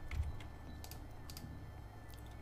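Computer keyboard keystrokes: a few separate clicks spread through the two seconds, over a low steady hum.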